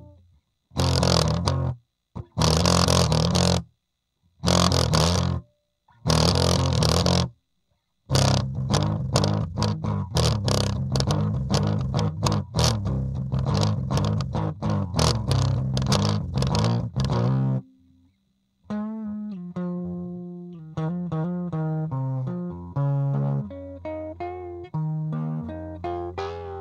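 Epiphone Les Paul Studio electric guitar played through a 15-watt practice amp with all knobs at 10 and its speaker cone slashed: four separate strummed chords, then fast continuous strumming, then a single-note line about two-thirds of the way in.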